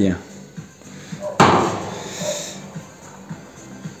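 A single sharp clank about a second and a half in, followed by about a second of fading rattle, as a homemade welded sheet-steel tractor hood is let back down after a lift-force test.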